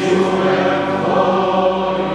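Sung liturgical chant: voices holding long, steady notes in a reverberant church.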